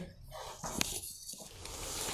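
Faint handling sounds: a light knock just under a second in, then plastic-bag rustling near the end.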